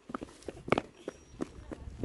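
Footsteps on an asphalt car park: a steady walking pace of about three steps a second.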